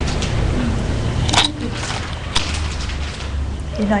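Steady low rumble and hum of an open lecture microphone, with two sharp clicks about a second apart in the first half. A voice starts just before the end.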